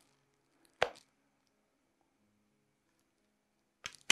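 A single short, sharp click about a second in, then near silence, with a fainter click near the end.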